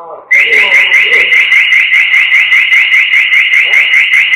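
A loud electronic alarm tone starts suddenly about a third of a second in. It is a high, short rising chirp repeated evenly about six times a second.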